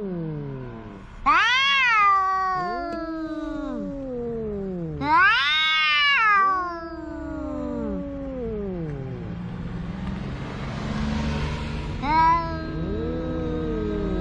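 Two cats, an orange-and-white cat and a colourpoint cat, yowling at each other in a threat standoff before a fight: long low howls that slide up and down in pitch, overlapping. Louder high-pitched wails break out about a second in, around five seconds in, and briefly near the end.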